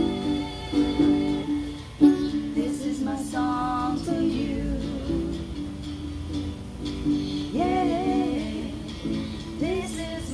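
Acoustic guitar playing a slow song, with women singing short phrases over it and the guitar carrying on alone between them.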